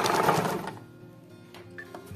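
Electric sewing machine stitching at a fast, even rate, then stopping under a second in.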